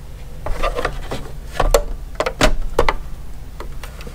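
Plastic housing of a Milwaukee M18 dual rapid charger being handled and turned onto its edge on a kitchen scale: rubbing and scraping with several sharp knocks, the loudest two in the middle.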